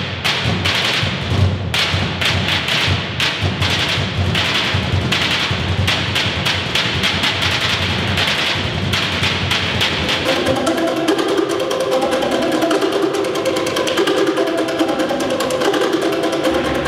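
Percussion ensemble drumming: fast, dense strokes on handheld drums with sticks. About ten seconds in, sustained pitched notes join the drumming.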